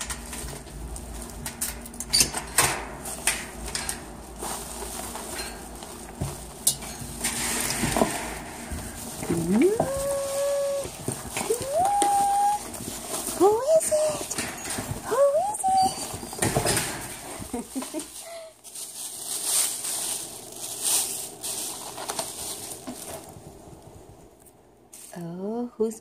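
Clicks, knocks and rattles of a metal security screen door and front door being opened, then a small dog greeting with a run of short whines that slide upward in pitch and hold, about six of them.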